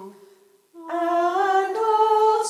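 A lower chanted line ends at the very start. After a brief pause, a woman's voice begins about a second in, singing the liturgical response unaccompanied in a slow, steady chant.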